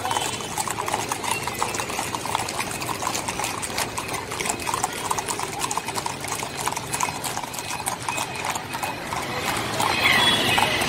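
Hooves of a column of horses clip-clopping on a paved street at a walk, many hoofbeats overlapping in an irregular patter.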